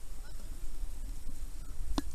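Low, steady rumble of wind and river water on the microphone as the boats move through a riffle, with faint wavering distant calls and a sharp knock near the end.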